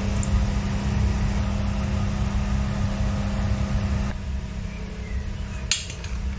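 Chips frying in a deep fat fryer with the oil at about 150 °C: a steady sizzle and bubbling with a low hum under it. The sizzle and hum drop away about four seconds in, and a single click comes near the end.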